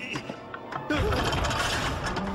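Cartoon soundtrack: film music, then about a second in a sudden loud, clattering, mechanical-sounding sound effect.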